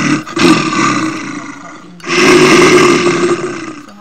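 Two long, loud animal roars, one after the other, each lasting nearly two seconds: an added animal-roar sound effect.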